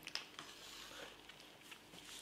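Near silence: quiet room tone with a few faint small clicks and rustles.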